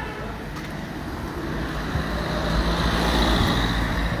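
Street traffic: a small van drives past close by, its engine and tyre noise swelling to a peak near the end, over a steady low traffic rumble.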